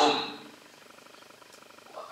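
A man's voice trails off at the end of a word, then a pause of quiet room tone with a faint, rapid buzz lasting about a second.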